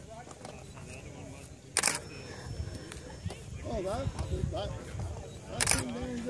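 Faint, distant voices over a low, steady outdoor rumble, with a sharp click about two seconds in and another near the end.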